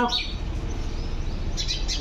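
Birds chirping: a few quick, high chirps near the end over a steady low background rumble.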